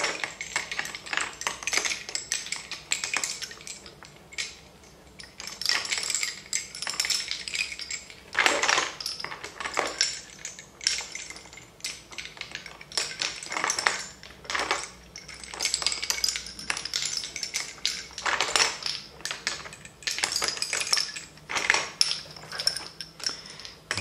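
Lace bobbins clacking against one another as pairs are crossed, twisted and pulled taut in bobbin lacemaking: irregular light knocks and rattles, with a quieter pause about four seconds in.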